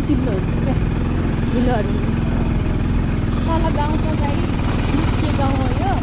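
Motorcycle engine running steadily at low speed on a rough dirt track, with snatches of a voice over it.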